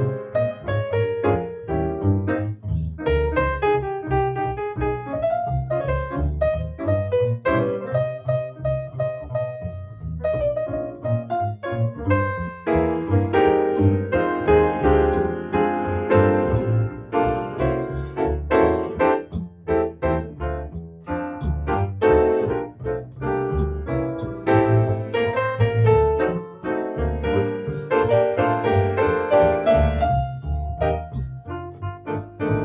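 Jazz duo of grand piano and plucked upright double bass playing together: piano chords and melody over a bass line.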